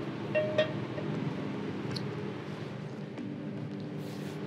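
A frying pan clinking lightly on the grate of a commercial gas range, a couple of short metallic chinks about half a second in and another about two seconds in, over the steady hum of a kitchen extractor.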